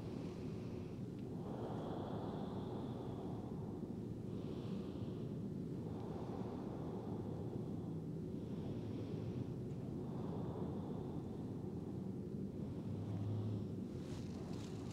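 Quiet room noise: a steady low hum, with faint soft swells every couple of seconds.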